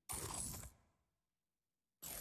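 Electronic interface sound effect of an on-screen system notification window appearing: two short bursts, the first about a tenth of a second in and fading out within a second, the second starting right at the end.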